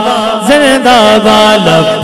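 A man's voice chanting a devotional Urdu tarana into a microphone, holding drawn-out vowels that slide between notes.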